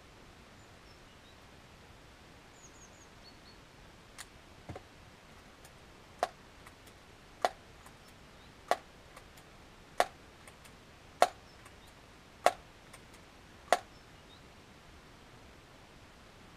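Daisy PowerLine 901 multi-pump air rifle being pumped: seven sharp, evenly spaced clacks of the pump lever about a second and a quarter apart, after two fainter clicks.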